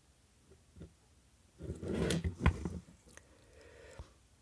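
Handling noise from an LED floodlight's plastic battery housing and circuit board being lifted and turned: about a second of rustling and clatter with a sharp knock midway, then only faint room tone.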